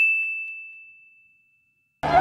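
A single bell-like ding: one clear high tone that fades away over about a second and a half, standing alone with the music and voices cut out around it.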